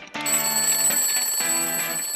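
Jingle music with an alarm clock's bell ringing over it, starting a moment in, high and shimmering.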